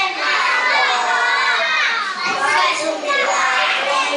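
Children's voices: a young boy singing into a microphone while a crowd of children calls out and shouts over one another in a hall.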